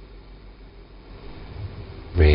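Steady background room noise during a pause in speech: an even hiss with a faint low hum.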